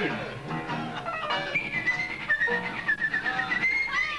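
A man whistling a short, slightly wavering tune over a light plucked-string accompaniment: the whistle is the sung gag in a bawdy limerick, about a man who had to whistle before he could pee.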